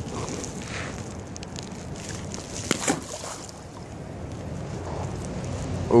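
Wind on the microphone and handling rustle, with one short sharp sound about three seconds in.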